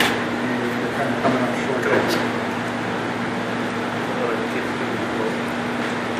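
Steady machine hum with one low steady tone under it, beneath faint background voices. A light click comes at the start and another about two seconds in.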